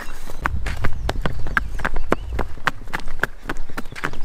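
Shetland pony's hooves clip-clopping at a walk on brick paving, about four or five sharp strikes a second, mixed with people's footsteps. A low rumble sits under the first couple of seconds.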